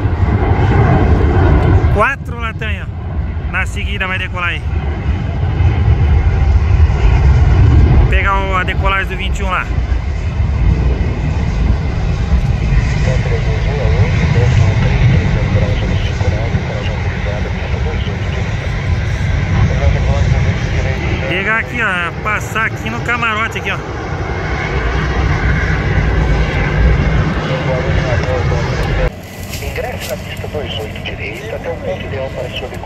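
Jet airliner engines at an airport: a deep, steady rumble as an airliner takes off and others taxi, with sudden changes in level where the footage cuts between shots. High, warbling chirps break in three times.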